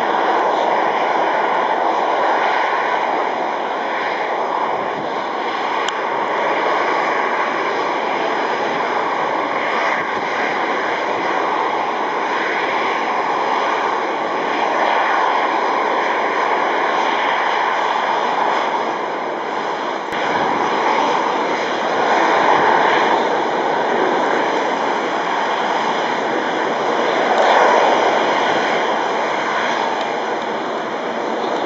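Boeing 737-900ER's CFM56-7B turbofan engines running at taxi power, a steady jet noise with gentle swells in level.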